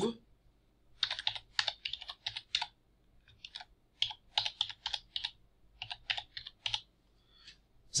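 Typing on a computer keyboard: quick runs of keystrokes in several groups with short pauses between.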